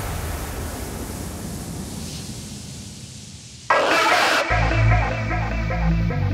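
Reverse-bass hardstyle electronic dance track in a break: a fading tail with no beat for over three seconds, then a sudden burst of noise, and the heavy kick and bass come back in with a synth melody shortly before the end.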